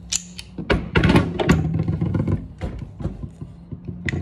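Irregular clicks and knocks of brass and plastic pipe fittings being handled, as a quick-connect coupling is pulled off and worked by hand.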